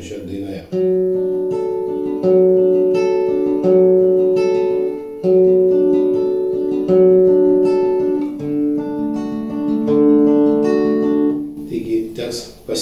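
Classical nylon-string guitar fingerpicked in a steady arpeggio: a thumb bass note followed by the third, second, third, first, third, second and third strings, repeating about every one and a half seconds. The chord changes about two thirds of the way through.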